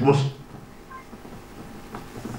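A man's speech through a microphone stops shortly after the start, followed by a pause of low room noise with one faint, brief tone about halfway through.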